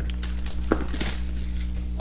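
Crinkling and scraping as hands handle a sealed cardboard trading-card box, in a few short scratchy bursts, over a steady low hum.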